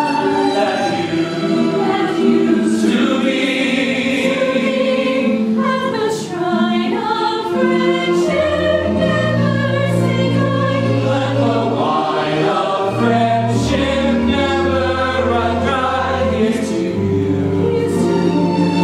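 Musical-theatre cast singing a slow refrain together in chorus, live on stage. A deeper line joins the voices about eight seconds in.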